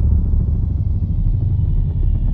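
Channel intro soundtrack: a loud, steady deep rumble with little above it.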